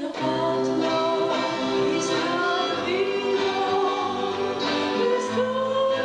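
Mixed choir of women's and men's voices singing, holding sustained chords that shift every second or so.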